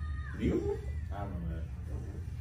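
A voice making two short, drawn-out vocal sounds, the second with a wavering pitch, over a steady low hum.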